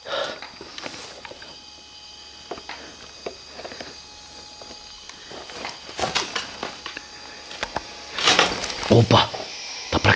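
Quiet room with scattered small clicks and crackles of footsteps moving over brick rubble and debris. A brief low voice or breath comes near the end.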